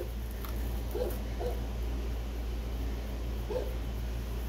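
Young nursing puppies giving four short, faint whimpering squeaks while their mother tends them, over a steady low background hum.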